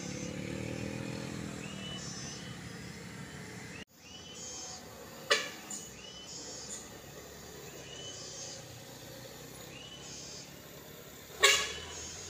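Road traffic on a tight bend: a motorcycle engine passing with rising pitch, then, after a cut, a medium cargo truck approaching and taking the bend, with two short, loud sharp sounds a few seconds apart.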